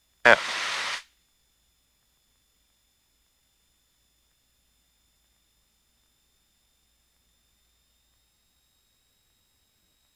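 Small-aircraft cockpit intercom audio: a short burst of hiss under a second long right at the start, then near silence with only a faint, steady high-pitched electronic whine; the engine is not heard.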